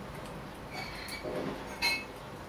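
Thin metal tool working in the movement of a Vostok Komandirskie mechanical watch: a short metallic squeak about a second in, then a sharp metal click near the end.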